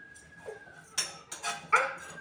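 A faint thin whine, then three short high-pitched whining cries about a second in.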